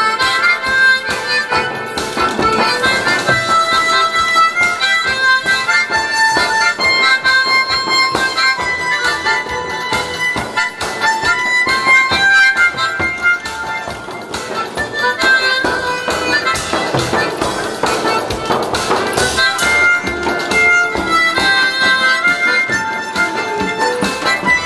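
A C-major harmonica playing a melody along with recorded backing music, over a steady drum beat.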